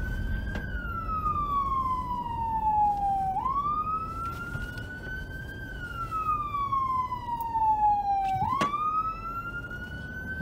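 Police car siren on a slow wail: each cycle jumps up quickly, climbs slowly to a peak about an octave higher and slides back down, roughly once every five seconds. Road and engine noise from the moving patrol car runs underneath.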